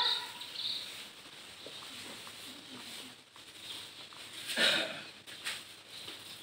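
Quiet outdoor background with a single short dog bark about three-quarters of the way through, and a few faint blips around it.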